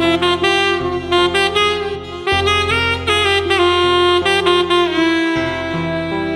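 Alto saxophones playing a Tamil film song melody, with notes that slide into one another, over a backing track with a low bass line.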